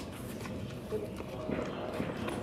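Giant panda chewing bamboo, with scattered sharp crunching cracks, over the background talk of onlookers.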